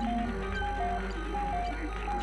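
Modular synthesizer music: a chiming high two-note figure steps down and repeats about every 0.7 s over lower synth notes.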